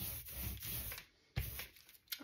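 Rubber hand brayer rolling ink over a collagraph plate: the tacky, crackling hiss of the inked roller on the textured plate, a longer stroke that stops about a second in, then a short second stroke.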